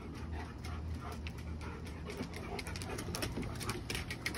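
Dogs panting as they move about, with sharp clicks of claws on the decking that come thicker in the second half.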